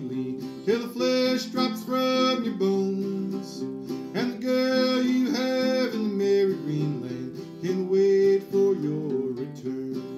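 Acoustic guitar playing an old-time ballad accompaniment, with a man's voice singing along in held notes.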